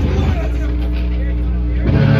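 A live punk band's amplified guitar and bass hold a low sustained note while a voice on the microphone carries over it; just before the end the full band comes crashing back in.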